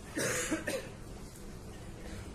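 A person coughing close to the microphone: a short burst of two or three quick coughs near the start, over the steady background hum of a large hall.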